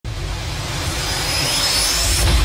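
Whoosh sound effect of an animated logo intro: a steady rushing noise over a low rumble, with a high tone sweeping upward over the second half as the logo swings into place.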